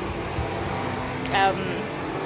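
Car engine running and accelerating, a steady drone with a low hum.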